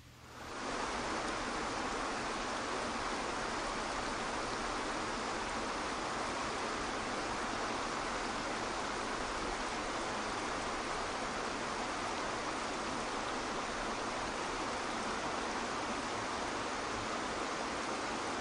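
Waterfall pouring into a pool: a steady rush of falling water that fades in within the first second and then holds even.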